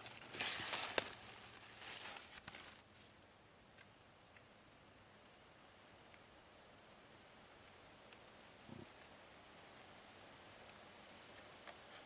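Rustling of twigs and dry leaves close to the microphone, with a sharp click about a second in, dying away after about three seconds into the faint steady hiss of quiet woodland.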